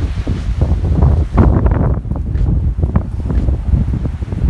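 Strong, gusty wind buffeting the phone's microphone: a loud, uneven low rumble that surges with each gust.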